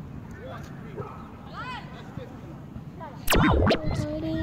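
Faint distant voices, then a loud burst of noise about three seconds in that lasts about half a second.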